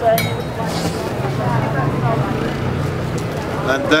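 Indistinct background voices murmuring over a steady low hum, with a light clink near the start.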